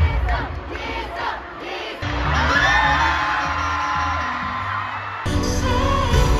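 Arena concert crowd screaming and cheering over loud pop music from the sound system. The music's heavy bass comes in about two seconds in, and the sound changes abruptly to louder music near the end.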